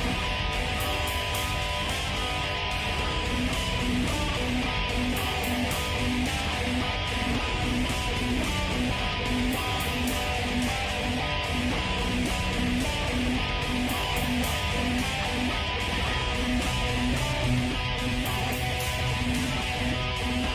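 Live gothic/doom metal band playing, led by heavy electric guitars, a dense, steady wall of sound with a low note repeating in an even pulse.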